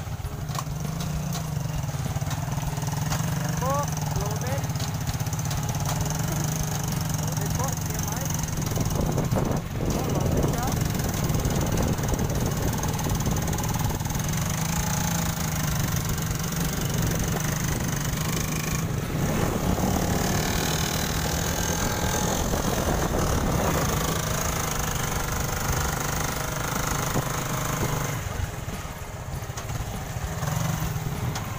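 Motorcycle tricycle engine running at a steady cruise, a constant low drone, with wind and road noise.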